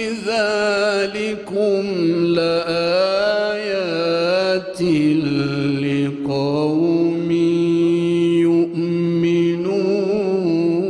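A man's solo voice chanting Quran recitation in a melodic style: long held notes with ornamented, wavering turns and a short breath near the middle, the pitch stepping down about five seconds in.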